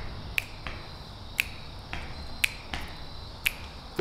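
Fingers snapping a steady beat, about one snap a second, with a few softer clicks between them, over a low steady rumble.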